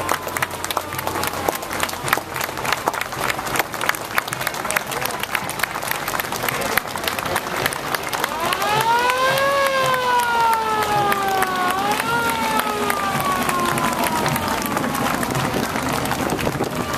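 A large crowd clapping and cheering steadily. In the middle a long pitched tone rises, slides down, jumps back up and slides down again before fading.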